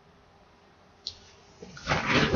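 Faint room hiss with a single sharp click about a second in, then a rising rustle and bumping near the end as a person rushes up close to the microphone.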